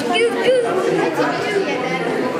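Many people talking at once, a busy chatter of overlapping voices, with high children's voices heard clearly near the start.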